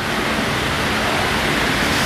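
Steady, even rushing noise with no speech, room noise from running electric fans.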